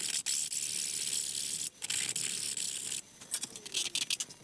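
A large metal file rasping along the edge of a 3D-printed plastic helmet, knocking down sharp edges. Two long strokes, then several short quick ones near the end.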